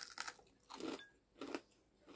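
A crunchy bite into a crisp fried-chicken coating, followed by chewing. A sharp crunch comes at the start, then two more crunching chews, one about a second in and one near the end.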